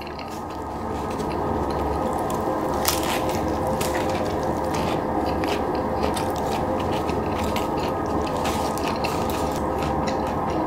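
Close-miked chewing of a mouthful of burger: a steady wet crackle with many irregular small clicks, rising about a second in and then holding even.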